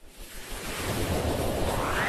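Whoosh sound effect of an animated logo intro: a rush of noise that swells up from silence and climbs in pitch.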